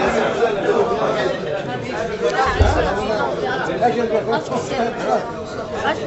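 Overlapping chatter of several people talking at once in a large room, with a brief low thud about two and a half seconds in.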